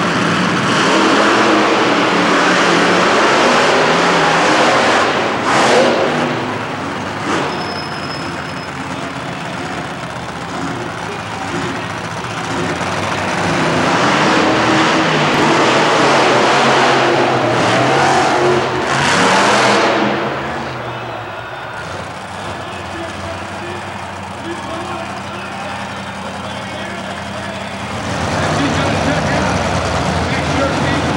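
Monster truck engines revving and running on the arena floor, loud in a spell at the start and again in a longer spell through the middle, then easing to a steadier, quieter run before picking up again near the end.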